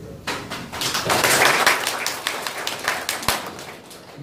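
Audience applauding: a burst of many hands clapping that starts just after the beginning, is fullest in the middle and dies away near the end.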